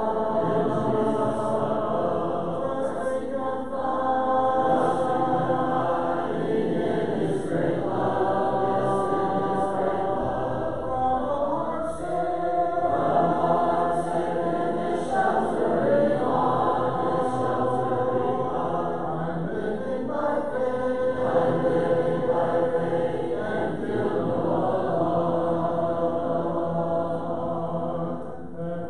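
A church congregation singing a hymn a cappella, many voices together with no instruments, led by a song leader. The phrases have long held notes.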